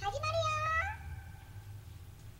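A high-pitched synthetic, vocaloid-style voice ends the opening jingle with one drawn-out note that rises and then holds for just under a second. After it only a faint low hum is left.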